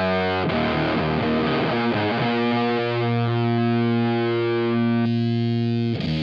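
Electric guitar played through a Boss FZ-2 Hyper Fuzz pedal: a few short fuzzed chords, then one chord held and left to ring, its brighter upper part fading away near the end.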